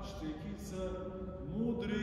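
A man's voice speaking, with slow, drawn-out syllables.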